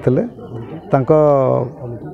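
Only speech: a man talking, with one long drawn-out syllable falling in pitch about a second in.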